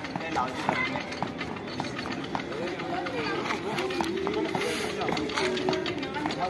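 Repeated light thuds of an athlete's feet landing on a rubber mat as he jumps in place with a barbell on his shoulders, with people talking in the background.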